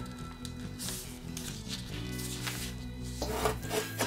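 Soft background music of held notes that change about two seconds in, with the faint rubbing and creasing of a sheet of printer paper being folded by hand.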